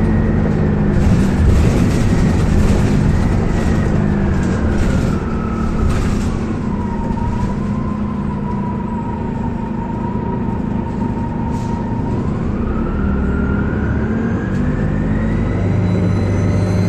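A 2004 Orion VII CNG bus running, its Detroit Diesel Series 50G engine and ZF Ecomat driveline heard together. A high whine drops in pitch from about four seconds in, holds lower for several seconds, then climbs again near the end. There are scattered rattles during the first six seconds.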